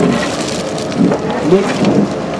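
Hydraulic sorting grab on an excavator gripping and pressing a stone block into gravel: a steady rough crunching and grinding of rock and gravel.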